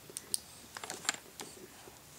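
Faint, irregular small clicks and taps from a baby mouthing and handling a plastic toy mirror on an activity centre.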